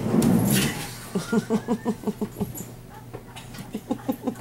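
A person laughing in a quick run of short "ha" bursts, starting about a second in and returning near the end, after a brief rustling noise at the start.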